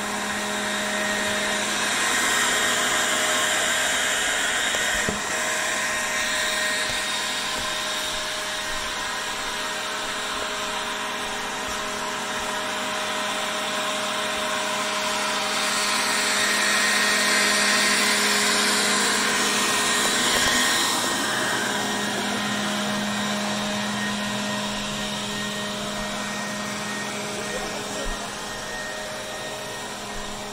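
A steady motor-like whir with a hissing rush and a constant hum, swelling louder twice.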